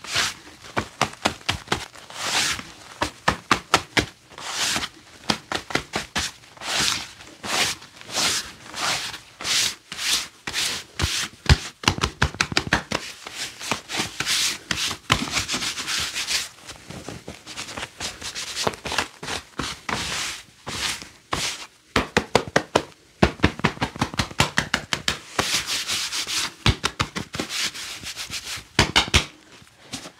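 Gloved hands rubbing and patting briskly over clothing in a pat-down search: fast, repeated strokes several a second, easing off for a few seconds in the middle before picking up again.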